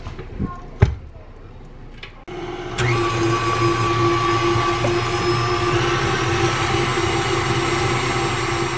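Pink KitchenAid Artisan tilt-head stand mixer with a wire whisk. A sharp knock comes about a second in as the head is lowered, then from about three seconds in the motor runs at a steady speed, mixing thin carrot cake batter.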